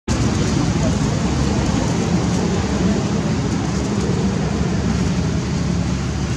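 Steady outdoor background noise: a continuous low rumble and hiss at an even level, with no distinct events standing out.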